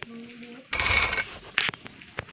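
Added sound effects: after a click and a brief low hum, a bright jingling burst with ringing metallic tones sounds for about half a second, followed by a few sharp clicks.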